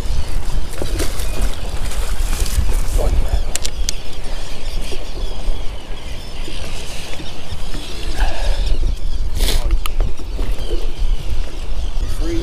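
Wind rumbling on the microphone over the sound of open water, with a few sharp clicks and knocks as the landing net and the freshly caught smallmouth bass are handled. The rumble eases off for a moment about halfway through.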